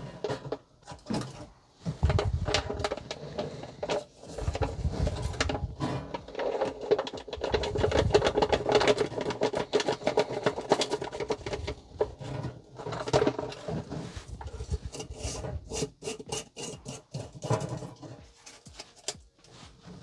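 Plastic ready-rice pouch and aluminium foil being handled, an irregular rustling and crinkling with scrapes and crackles, as leftover rice is tipped into a foil-capped jar.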